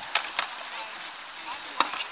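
Steady rush of shallow river current around a canoe. Three short sharp knocks or splashes come from the paddling: two close together just after the start, and a louder one near the end.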